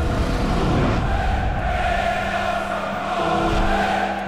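Channel intro jingle: a loud, dense, rushing sound effect over music, held at an even level.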